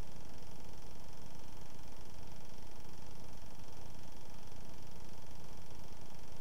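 Steady, even hiss and hum of room tone, with no distinct sounds.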